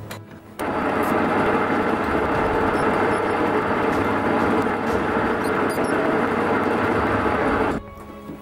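Metal lathe running while a twist drill in the tailstock bores into a piece of iron-nickel meteorite, a steady, loud machining noise. It starts abruptly about half a second in and stops just before the end.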